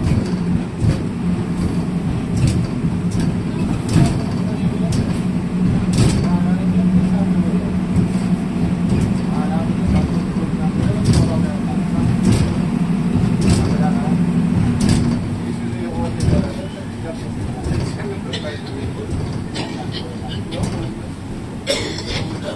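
Riding inside a moving city bus: engine and road rumble with frequent rattles and knocks from the body and windows. A steady hum holds from a few seconds in until past the middle, then fades.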